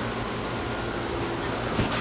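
Air conditioner running loud: a steady rushing noise with a low hum under it, with one brief click near the end.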